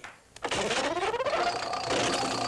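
Game-show slot-machine reels spinning: a fast, busy whirring clatter that starts about half a second in after a brief silence, with a tone that rises in pitch over the next second.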